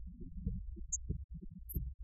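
Guitar synthesizer played in a low register: a quick series of short, deep notes, each a muffled thud, several a second.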